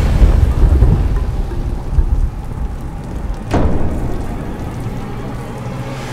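A loud low rumble that eases off over the first two seconds, over a steady hiss, with one sharp crack about three and a half seconds in.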